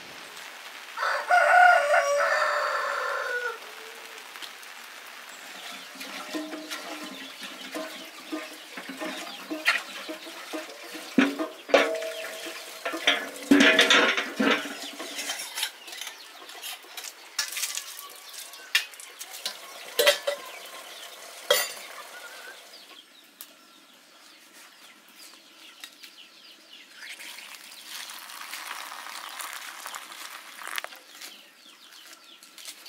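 A rooster crows once, a long call about a second in that falls in pitch at its end. It is followed by chickens clucking and scattered sharp clicks and knocks, and near the end a steady hiss of water running from a tap.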